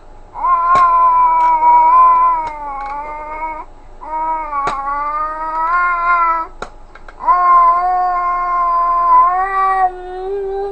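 A baby making three long, drawn-out vocal sounds, each held at a fairly steady pitch for about three seconds with short breaks between them. A few sharp clicks of hands knocking on a plastic activity-cube toy come through as well.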